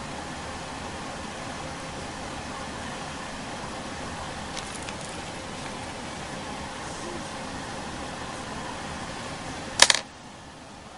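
Steady hiss of background room noise, with a few faint clicks about halfway and a brief, loud clatter of clicks just before the end.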